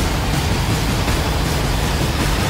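Steady, loud rushing noise with a deep rumble underneath, a whoosh-and-rumble sound effect from an animated title intro.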